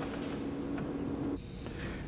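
Low, steady room tone with a faint hum that cuts off a little past halfway through; no distinct event.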